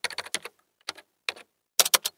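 Keyboard typing sound effect timed to on-screen text. A quick run of keystrokes comes first, then a few single taps, then a fast flurry of keystrokes near the end.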